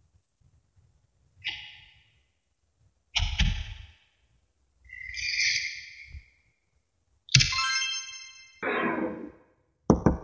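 A string of separate short sounds. A high clink comes about a second and a half in, then a knock with a heavy low thud. A held high tone follows about five seconds in, and a bright ringing ding with many overtones near the middle of the second half, trailing into a rustle and another knock at the end.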